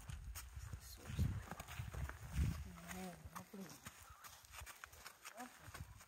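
A horse's hooves and a person's boots crunching on gravel as they walk, in irregular steps.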